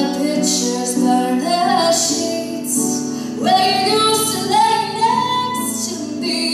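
Live country-style song performance: a singing voice holds and bends long notes over steady instrumental accompaniment.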